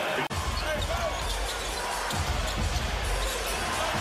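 Live NBA game sound in an arena: steady crowd noise with a basketball bouncing on the hardwood court during play. A moment in, the sound drops out briefly at an edit and picks up again on a new play.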